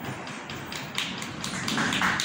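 Scattered hand claps from a small audience, a few irregular claps a second.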